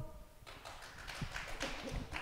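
The last chord of an a cappella choir dies away in the hall's reverberation, followed by a quiet stretch with a few faint scattered taps and knocks.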